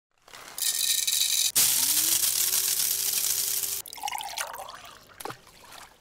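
Liquid poured into a cup: a steady stream whose pitch rises as the cup fills, stopping a little under four seconds in, followed by quieter dribbles and a short click near the end.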